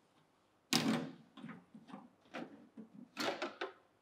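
Plastic parts of an automatic orange-juicing machine being opened up and handled for cleaning: a sharp clack just under a second in, then a run of lighter knocks and clicks.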